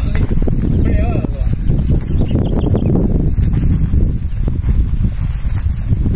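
Hooves of a saddled Quarter Horse mare walking on dry, packed dirt, under a steady low rumble of wind on the microphone, with faint voices in the background.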